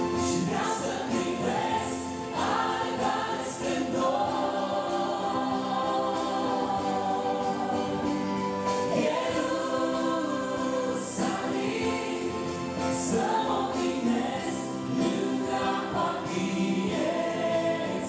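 Live Christian worship song: a woman singing into a microphone, with a man's voice and electronic keyboard accompaniment holding sustained chords beneath, heard in a reverberant church hall.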